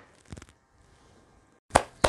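Near silence, broken by a couple of faint clicks about a third of a second in and a sharper click near the end.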